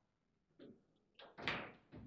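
Sharp knocks of table football play: the ball being struck by the rod figures and rebounding on the table, with rods clacking, four or so hits, the loudest about a second and a half in.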